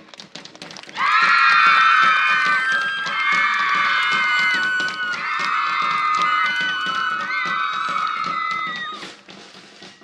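Live marching band music: a drum-kit beat, with loud held chords over it from about a second in that change pitch a few times and stop near the end, leaving the drums alone.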